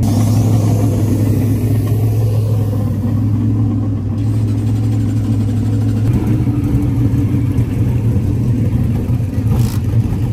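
Dirt modified race car engine idling in a steady, loud, low drone. The sound shifts slightly about six seconds in.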